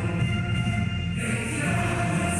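A group singing what is likely a national anthem together, with a woman's voice carried over a microphone. There is a short pause between phrases about a second in, then the singing resumes.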